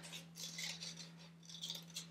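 Scissors cutting construction paper: several short, faint snips.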